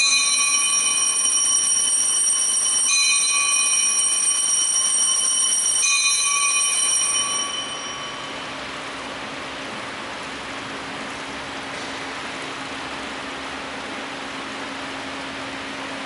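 Altar bells rung three times, about three seconds apart, at the elevation of the chalice during the consecration: each ring is sharp and high and lingers, and the last fades out about eight seconds in. A faint steady low hum runs underneath.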